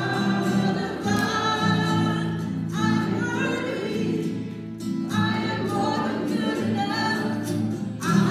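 A woman sings a worship song while strumming an acoustic guitar, with the congregation singing along in sung phrases broken by short breaths.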